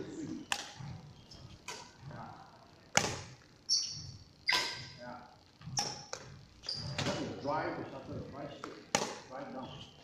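Badminton rackets striking a shuttlecock in a rally, a string of sharp hits about one every second or so, each ringing on in a large hall's echo.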